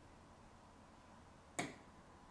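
Near-silent room tone with a single sharp click about one and a half seconds in.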